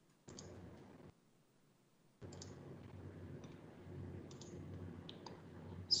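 Scattered faint clicks at a computer as a file is being opened, over low room noise that cuts out twice.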